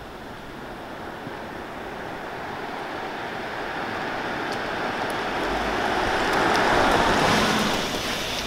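Mercedes-Benz S-Class coming closer at about 20 mph, the rushing noise of its tyres on asphalt growing steadily louder, then easing off near the end as the car brakes itself to a stop.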